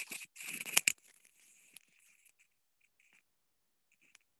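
About a second of rustling, crackling noise with a sharp click near its end, then faint scattered crackles, picked up by a participant's open microphone on a video call.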